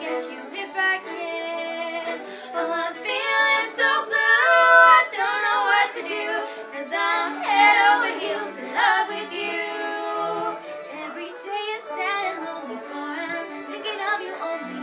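Two women singing a song together in unaccompanied-sounding voices over piano accompaniment, the melody held and sliding through long sung notes.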